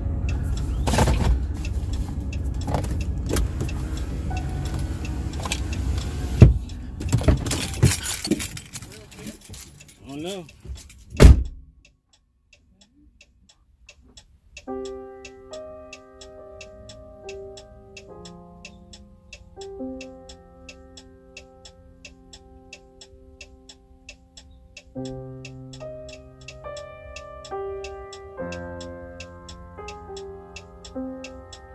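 For about the first eleven seconds, rough wind and handling noise on a phone microphone with several sharp knocks, ending in a loud knock. After a few seconds of silence, background music with a fast steady ticking beat and held chords comes in.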